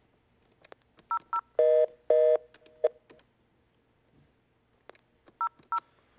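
Desk telephone keypad beeps: two short two-note beeps about a second in, followed by two short buzzing line tones, then two more beeps near the end, as a call line is picked up.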